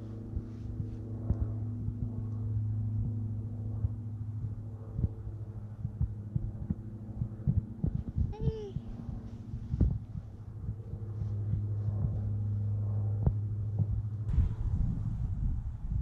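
A steady low hum with several evenly stacked overtones, fading briefly about ten seconds in and then returning. Scattered clicks and knocks sound throughout, and a short arched call comes about eight and a half seconds in.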